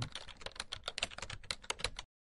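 Rapid typing on a keyboard: a dense, irregular run of light clicks, many a second, that stops suddenly at the end.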